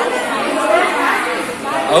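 Indistinct chatter of several people talking at once, women's and children's voices overlapping.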